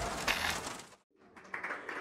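Scattered clapping after a song, fading out to a moment of dead silence about a second in, then faint clapping starting again.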